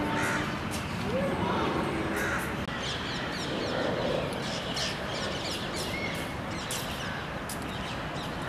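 Birds calling over steady outdoor background noise, with many short calls scattered throughout.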